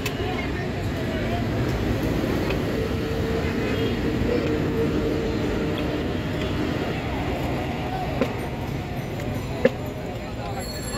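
Busy street background: traffic running and people talking nearby, with two short sharp knocks near the end.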